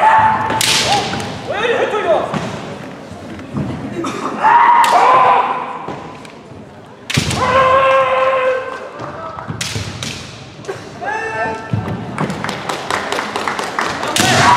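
Kendo fencers' long, held kiai shouts, mixed with sharp cracks of bamboo shinai strikes and thumping stamps on a wooden hall floor. A quick run of sharp clacks comes near the end.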